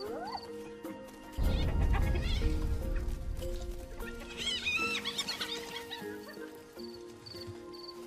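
Documentary score with sustained notes; about four seconds in, high wavering calls from spotted hyena cubs rise over it for a second or so. A deep rumble swells in the music about a second and a half in, and faint insect chirps pulse regularly near the start and end.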